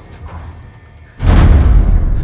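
Quiet background music, then a sudden loud, deep boom a little over a second in that rings on and fades slowly.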